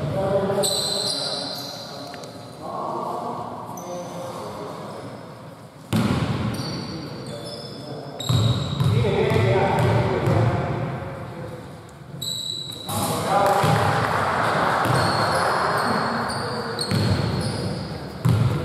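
A basketball being dribbled on a hardwood gym floor, bouncing repeatedly as a player readies a free throw.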